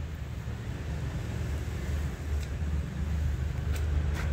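A steady low engine hum, as from a vehicle running nearby, with a few faint ticks as dry potting mix is handled.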